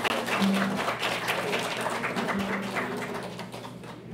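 Audience applauding, with a low tone held twice in the middle; the clapping thins out and dies down toward the end.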